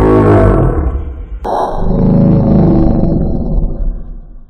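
A loud roar-like sound falling in pitch, then a second sudden burst about a second and a half in that trails away.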